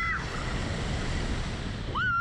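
Wind rushing over the onboard microphone of a Slingshot reverse-bungee ride as the capsule is flung through the air. A rider's high scream cuts off just after the start, and another scream starts near the end.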